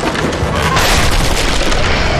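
Loud action-drama soundtrack: a deep booming hit and a dense, rushing swell of sound effects over dramatic music.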